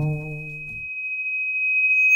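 Closing seconds of a hip-hop track. A low note from the beat dies away within the first second, leaving a single steady, high, pure tone that grows louder toward the end.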